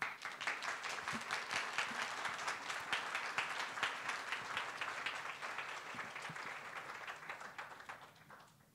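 Audience applauding, the clapping starting all at once and dying away over the last couple of seconds.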